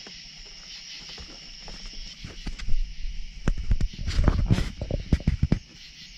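Crickets chirping steadily. From about two seconds in there is a rising run of irregular footsteps and rustling knocks as someone walks over grass.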